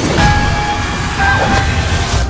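Horror trailer sound design: a loud, dense low rumble with high, steady screeching tones over it, and a sudden falling whoosh-hit just after the start and another at the end.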